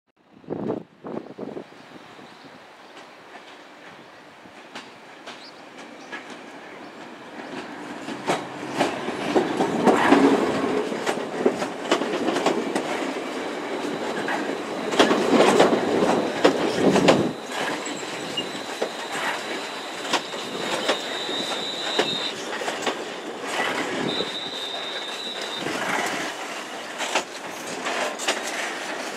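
Siemens Desiro Class 350 electric multiple unit running into a station and along the platform. Its wheels click over rail joints under a rising rumble that is loudest through the middle. Twice near the end a high, thin squeal sounds from the wheels.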